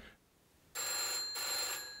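An electric bell ringing for about a second, with a brief break partway through. Its tones then ring on and slowly fade.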